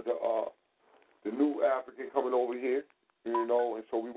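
A person talking over a telephone line, in three phrases with short pauses between them.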